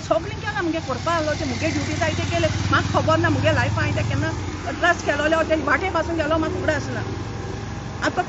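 A woman talking continuously, with the low rumble of a motor vehicle's engine underneath that is strongest for the first four seconds or so and then fades away.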